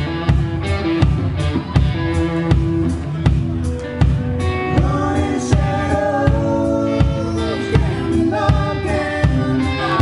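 Live band playing a song: electric guitar and drum kit with voices singing over a steady beat.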